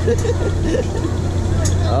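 A man laughing and voices, over a steady low hum.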